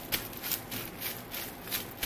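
Clear plastic wrapping film crinkling and rustling in a string of short crackles as hands press and fold it around a paperback book.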